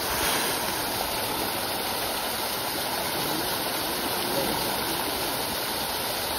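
Steady rush of churning water from a jet pouring into a fish pond, with a swarm of fish splashing at the surface as they feed.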